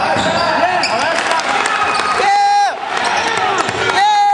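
Basketball being bounced on a gym court amid voices, with a long high-pitched shout a little past halfway.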